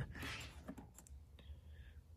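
A few faint clicks and taps of a hand on a plastic fuse box cover, after a soft breath at the start.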